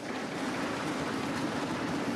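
Many members of a parliamentary chamber thumping their desks at once in approval, a dense, steady clatter.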